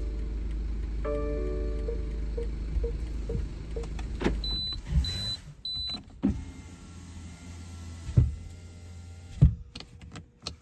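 Sounds inside a stopped car: a low steady hum with a short electronic chime early on, three short high beeps about halfway through, then the hum drops away and several sharp thumps follow.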